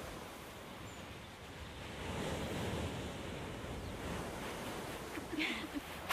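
Sea surf washing on a shingle beach: a steady rushing noise that swells about two seconds in. Near the end a woman starts to laugh briefly.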